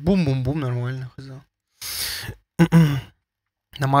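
A man's voice making wordless sounds: a drawn-out voiced sound at first, then a breathy sigh about two seconds in and a short voiced grunt after it.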